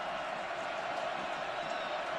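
Steady noise of a large stadium crowd, many voices blending into one even sound.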